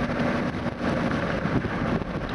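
Steady road and engine noise inside a moving car, with wind rushing in at an open window.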